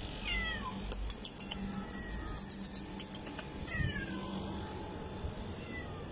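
A cat meowing: high meows that fall in pitch, one just after the start, another about four seconds in and a short one near the end.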